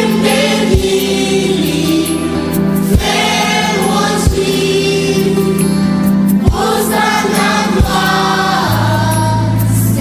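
Gospel choir singing over accompaniment, with sustained bass notes and a sharp accent every second or two.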